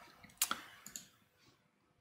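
Computer mouse clicking: one sharp click about half a second in, followed by a few fainter clicks, then near silence.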